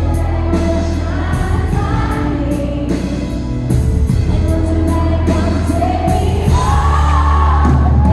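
Live pop-rock band music, amplified, with singing over a heavy sustained bass line and drums.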